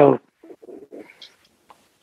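A man's voice over a video call ends a word, then pauses; a few faint, low sounds come in the first second of the pause.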